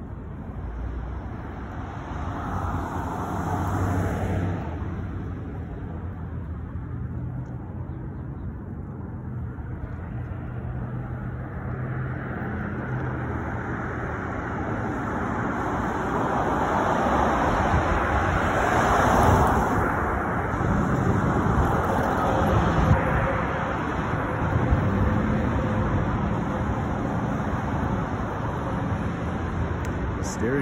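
Road traffic: cars driving past on a multi-lane street, a steady tyre-and-engine rush. It swells with a pass a few seconds in and again through a longer, louder stretch from about 16 to 23 seconds.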